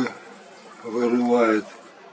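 Crickets trilling steadily in a continuous high-pitched, rapidly pulsing chorus, with a man's voice heard briefly about a second in.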